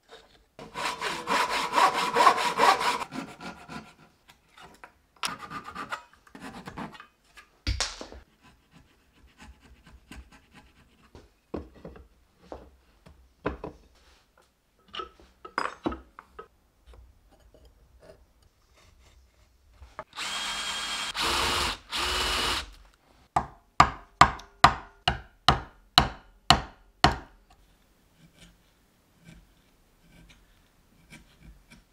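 Hand tools working hardwood: rasping strokes of a blade cutting wood about a second in and again around twenty seconds in, scattered light knocks of tools and wood between them, then about ten sharp knocks in quick succession near the end, a mallet driving a chisel to chop out a mortise.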